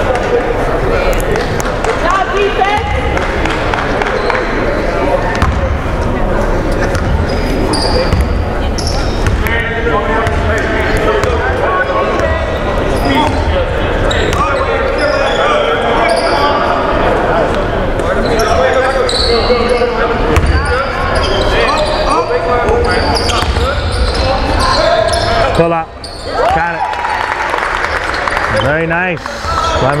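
A basketball bouncing on a hardwood gym floor, with indistinct voices of players and onlookers around it.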